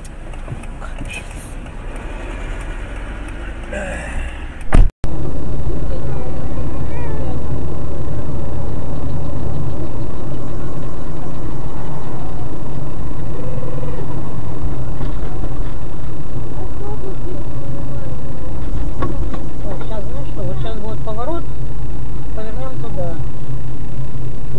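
Dashcam audio from inside a moving car: cabin and road noise with a short loud knock about five seconds in. After a cut, a much louder, steady rumble of engine and road noise from another car's dashcam.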